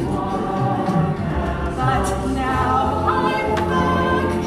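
Singing voices performing a musical number with accompaniment, the pitch moving from note to note over steady sustained low notes.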